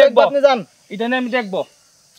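Speech only: one voice talking in two short phrases, stopping a little before the end.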